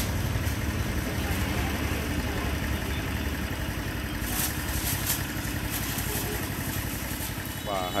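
A motorcycle engine idling steadily, with a few short crinkles of plastic bags about four to five seconds in.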